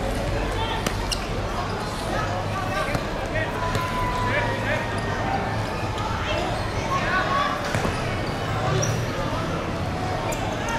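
A football being kicked and bouncing on a hard court, with sharp thuds scattered through, under players' shouted calls.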